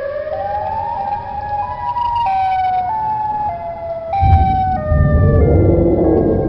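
Emergency vehicle siren, first gliding up in pitch, then switching between two tones about every half second as its pitch drifts lower. A low rumble joins about four seconds in.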